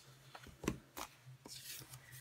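Scissors snipping through a vinyl sticker sheet and its backing: a few short, quiet snips spread over two seconds.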